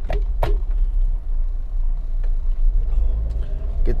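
Low, steady rumble of a 2014 Toyota Avanza 1.5 automatic's engine and tyres heard from inside the cabin while driving slowly, with two light clicks in the first half second. The engine runs evenly, without the jerks a faulty automatic gives.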